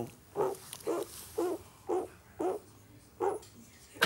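A man imitating a dog barking with his voice, made to sound muffled as if from another room: about six short barks with gaps between them.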